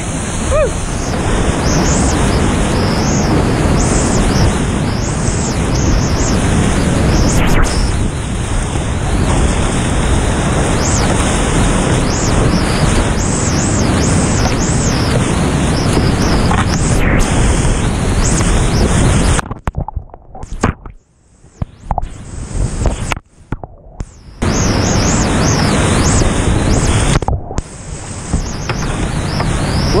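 Loud, steady rush of whitewater and water pounding against a GoPro in its housing as a kayak runs a steep rapid. Past the middle the roar drops away almost to quiet for a few seconds, and briefly again near the end.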